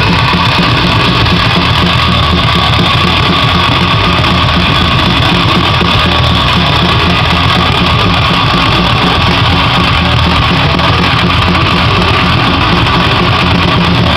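Live metal-punk band playing loud: drum kit with crashing cymbals under guitar, a dense unbroken wall of sound with no pauses.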